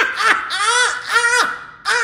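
A woman laughing hard and loudly, high-pitched, in a run of rising-and-falling peals.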